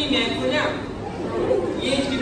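Speech: voices talking in a large, echoing hall, with some overlapping chatter.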